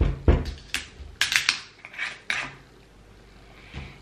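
A knock from the bottle being handled, then a quick run of sharp clicks, as the screw cap of a cocktail bottle is twisted open, for about two seconds.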